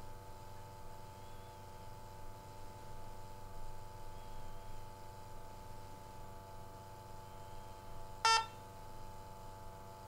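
A single short electronic beep from a SENSIT GOLD G2 gas detector about eight seconds in, as the H2S calibration step finishes, over a faint steady hum.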